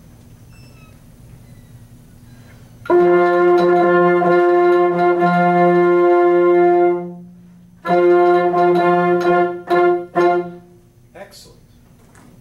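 An instrumental ensemble playing a long held chord of several notes for about four seconds. It stops, then comes back in with a second held chord for about two and a half seconds, which ends in a couple of short notes and a cutoff.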